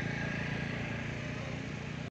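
A vehicle engine idling steadily at close range, with the low, even hum of a running motor and no change in speed.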